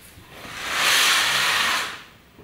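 A breathy hiss that swells in, holds for about a second, and fades out.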